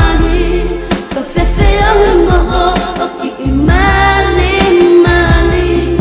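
Tongan pop love song: a solo voice sings over a steady bass line, with short pauses between phrases.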